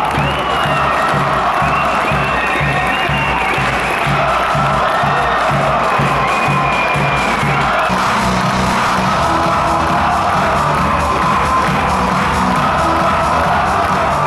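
Music with a steady low beat over a cheering, applauding crowd in a sports hall; the beat changes about eight seconds in.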